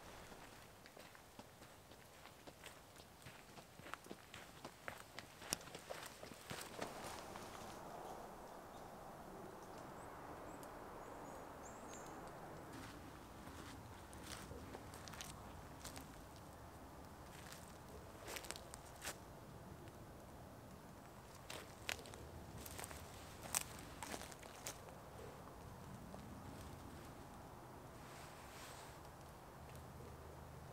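Faint, irregular footsteps of a person walking along a damp forest trail covered in pine needles and sand, a little louder at times as they pass nearer.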